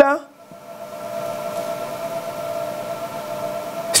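Steady background hiss with a faint, constant held tone under it, after the tail of a spoken word right at the start.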